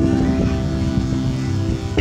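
Live band playing amplified music through a PA, with guitar and bass holding a steady chord.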